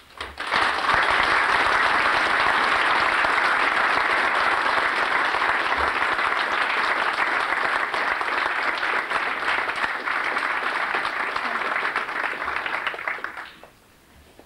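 Audience applauding: dense clapping that starts suddenly just after a speech ends, holds steady for about thirteen seconds and dies away near the end.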